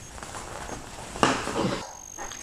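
Handling noise of a nylon down quilt being worked by hand while snaps are set, with one short, louder sound a little past the middle.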